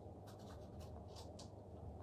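Faint, scattered light rustles and taps, a few short ones across the two seconds, over a low steady room hum.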